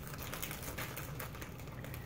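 A plastic package of sliced pepperoni crinkling as hands work at it: a faint, continuous run of small crackling clicks.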